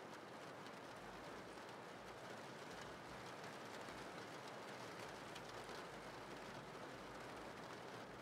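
Faint, steady rain: an even hiss that holds without a break.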